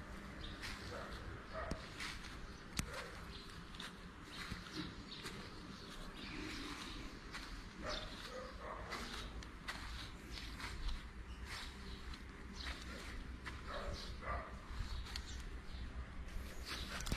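Faint outdoor sound of footsteps on grass and handheld-camera handling clicks as someone walks around a pitched tent, with faint short calls in the background.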